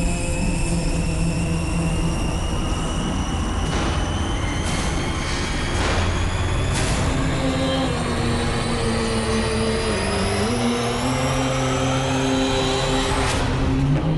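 Cinematic intro soundtrack: a long riser climbing slowly in pitch over a deep rumble, with several whooshes and a bigger swell near the end. Sustained low synth notes come in about halfway and bend down briefly before levelling off.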